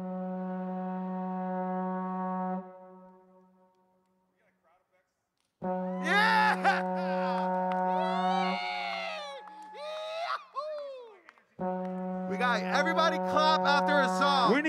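A long, low, brass-like horn note from the DJ music, held steady and stopping abruptly, sounding three times with short breaks between: the second time with gliding, wavering vocal sounds over it, and the third time with a man's voice shouting over it near the end.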